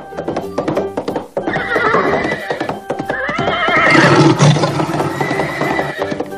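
A horse whinnying with a wavering pitch, over rapid hoof clip-clops and background music; the whinny is loudest about four seconds in.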